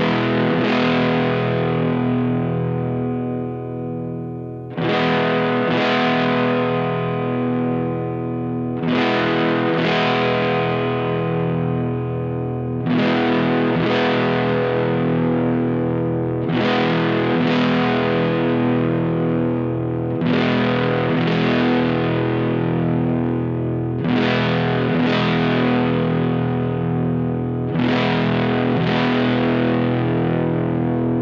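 Electric guitar, a Telecaster on its neck pickup, played through a Vox AC4 tube amp modded toward a Marshall Class 5 circuit (single-ended EL84 class A), overdriven and heard through an analog cab simulator. The tone controls are at noon. A chord pattern is strummed twice in quick succession about every four seconds, and each pair is left to ring out.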